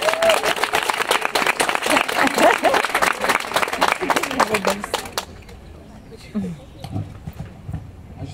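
Audience clapping, with voices calling out over it, stopping abruptly about five seconds in; a few quieter voices follow.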